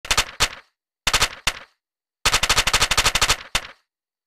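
Machine-gun fire sound effect: two short bursts about a second apart, then a longer burst of over a second at about ten shots a second, then one last shot, each cut off into dead silence.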